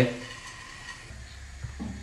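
Faint sizzling hiss of chopped almonds toasting in a small frying pan, with a low steady hum coming in about halfway.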